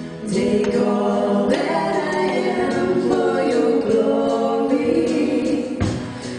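A congregation and worship team singing a contemporary worship song together, many voices led by female singers over a live band with drums. The singing swells back in just after the start.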